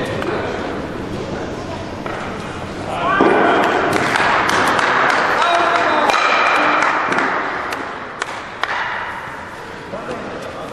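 Players and spectators calling out in an ice hall, rising to a louder stretch of voices mid-way, then two sharp knocks about eight seconds in, like ice stocks striking each other on the ice.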